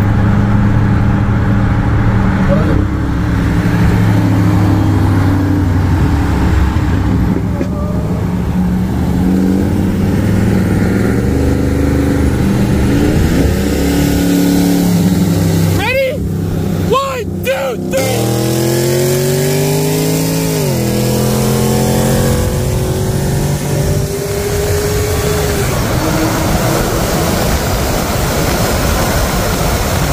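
Supercharged Hemi V8 of a 2022 Dodge Challenger SRT Hellcat heard from inside the cabin under hard acceleration, the revs climbing and dropping back at each upshift, with one long rising pull a little past halfway that falls away, over loud road and wind noise.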